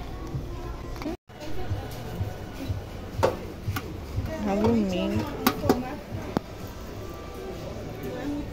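Stacked aluminium baking pans knocking and clinking together as they are handled, a handful of sharp knocks between about three and six and a half seconds in, over background music and voices. The sound cuts out completely for a moment about a second in.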